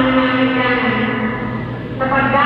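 Singing in a large, echoing church: a voice holding long notes that slide slowly down in pitch.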